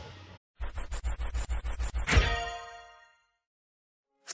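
Transition sound effect: the tail of rock music fades out, then comes a quick run of ticks over low thumps, about seven a second, ending in a bright ding that rings out and fades within a second.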